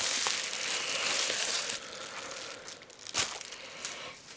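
Crinkling rustle of packaging being handled, loudest for the first couple of seconds and then fading, with a single sharp tap a little after three seconds in.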